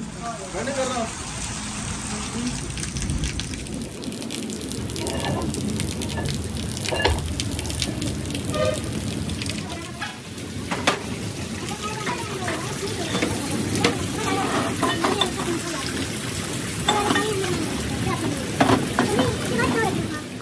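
Metal workshop ambience: a steady hiss of background noise with scattered sharp metallic clinks and knocks from parts being handled, and indistinct voices in the background.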